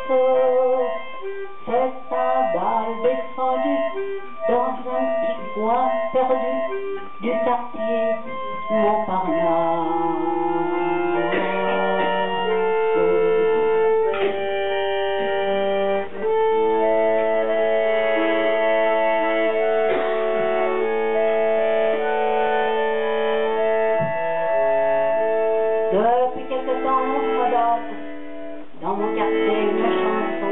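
Chromatic button accordion playing an instrumental passage: a quick, ornamented line at first, then long held chords from about ten seconds in, with quicker runs again near the end.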